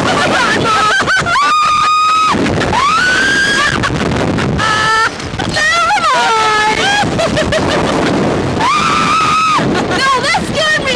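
Two women riders screaming on a reverse-bungee Slingshot ride. They let out long, high, held screams about a second in, at about three seconds and near the end, with wavering shrieks and laughter between. Heavy wind rushes over the microphone as the capsule is flung through the air.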